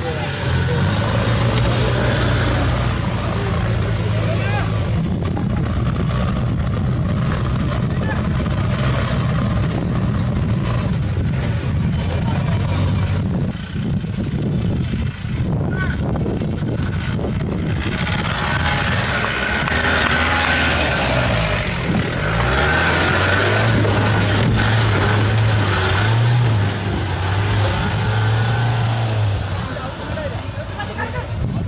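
Off-road 4x4 engine running and revving on a dirt course. Its pitch rises and falls around twenty seconds in, over crowd chatter.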